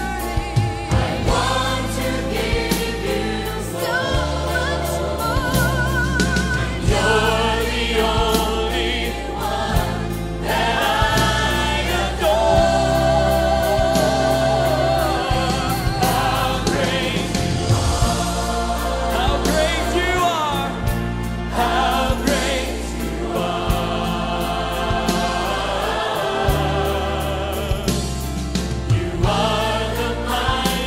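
Choir singing a gospel praise and worship song, sustained sung notes with vibrato over a steady bass line and a regular beat.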